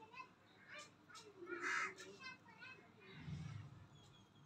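Faint background birds calling, with one louder, harsh call a little before the midpoint and several short chirps after it, over faint voices.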